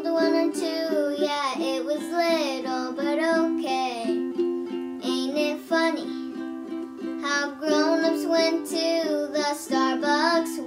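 A young girl singing while strumming a ukulele, with chords struck in a steady rhythm under her voice.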